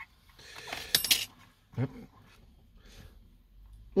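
Hands working the electric motor and gears of an RC monster truck: a short rustle that builds to a few sharp clicks about a second in, as the motor is pushed against a paper shim to set the pinion-to-spur gear mesh.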